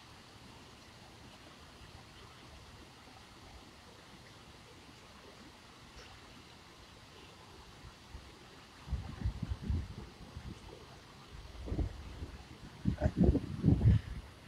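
Faint steady outdoor background hiss, then from about nine seconds in a series of irregular low rumbling bumps on the phone's microphone, loudest just before the end.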